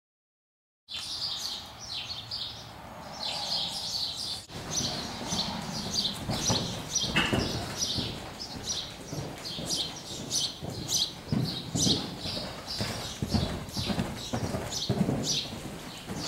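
Hoofbeats of a gray Hanoverian-cross mare moving loose on soft indoor-arena footing, a run of dull thuds starting about a second in, with small birds calling in short high notes throughout.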